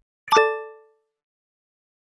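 A single short pop-like ding sound effect for an on-screen animation: one pitched hit that rings briefly and fades out within about half a second.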